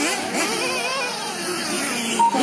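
Several 1/8-scale nitro RC buggy engines revving up and down together, with quick, wavering rises and falls in pitch.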